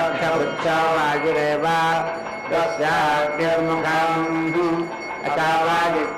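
Sanskrit mantras chanted in a melodic, sustained recitation, phrases held on steady notes with short breaks between them.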